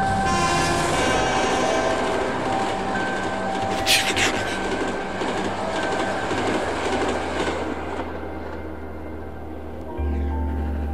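Train sound effect in a radio programme: a train running on the rails, with a sharp hiss about four seconds in, over steady background tones. It grows quieter over the last couple of seconds.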